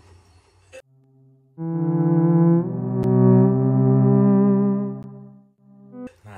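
A dramatic music sting of low brass holding a loud chord for about four seconds. It starts about a second and a half in, shifts once shortly after, and then fades.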